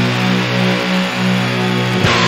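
Instrumental doom metal: a heavily fuzzed electric guitar in drop-C tuning sustains a low drone chord that swells slowly, with no drums. A new chord is struck right at the end.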